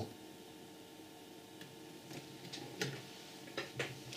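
Quiet room tone with a few faint, short clicks scattered through the second half.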